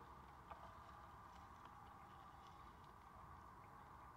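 Near silence: faint steady room tone inside a car, with a single faint click about half a second in.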